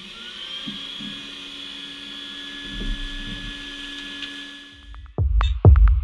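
Vacuum cleaner motor running with a steady whine, stopping about five seconds in. Music with a heavy beat starts near the end.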